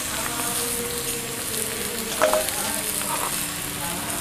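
Diced pumpkin and potato sizzling as they fry in a black iron karahi over a wood fire. About two seconds in there is a single sharp metal clank.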